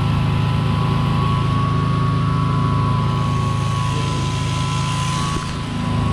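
Sheep-shearing machine running: the overhead shearing gear and handpiece make a steady mechanical hum with a thin, high, steady whine over it.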